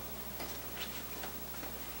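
Faint, light ticks, evenly spaced about two and a half a second, over a low steady hum.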